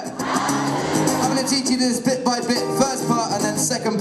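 Live music: a looped stack of layered male vocals, built up into a gospel-choir effect, plays through the PA as held, overlapping sung notes.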